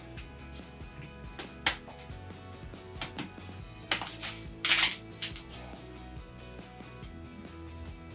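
Scissors snipping through plastic canvas: about five sharp, crisp clicks at uneven intervals as the blades cut through the plastic bars one by one, over quiet background music.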